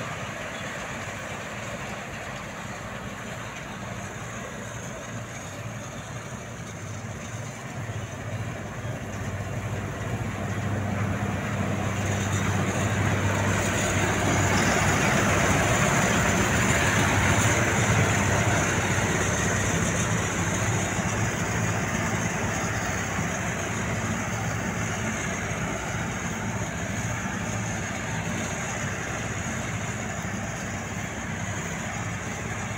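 Combine harvester cutting wheat as it drives past: the steady run of its diesel engine and threshing machinery, with a high whine over it, grows louder, is loudest about halfway through, then fades as it moves away.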